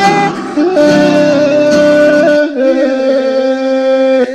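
A song being sung by a man over a backing track, with long held notes. The low end of the backing drops out about two and a half seconds in, leaving the held note over lighter accompaniment.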